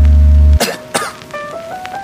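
Background music: a loud, sustained deep bass note that cuts off about half a second in, followed by sharp percussive hits and short notes stepping upward.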